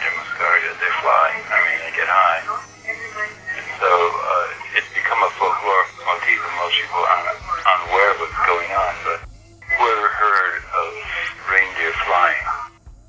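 A man talking in an interview recording with thin, narrow, radio-like sound, over background noise and a steady low hum.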